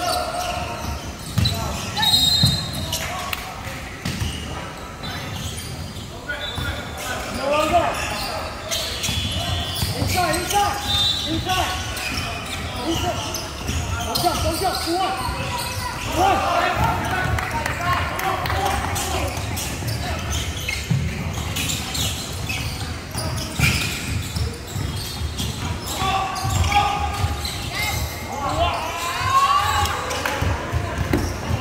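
Basketball dribbled and bounced on a hardwood court during live play, echoing in a large sports hall. Indistinct shouts and chatter from players and courtside people run underneath.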